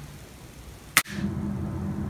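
A single sharp click about a second in, where the recording cuts to a new take. It is followed by quiet room tone with a steady low hum.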